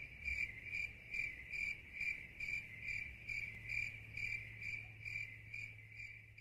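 Cricket chirping in an even rhythm, a short high chirp a little over twice a second. It is the comedy sound effect for an awkward silence.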